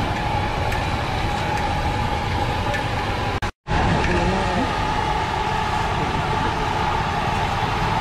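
Steady engine-like drone with a constant hum, broken by a split-second dropout about three and a half seconds in; a voice is heard briefly just after.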